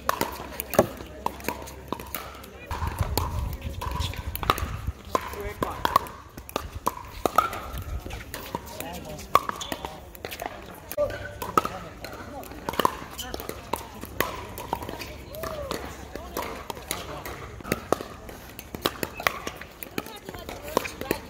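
Pickleball paddles striking hard plastic pickleballs: a string of sharp pops at irregular intervals as rallies go on across several courts, with voices of players and onlookers in the background.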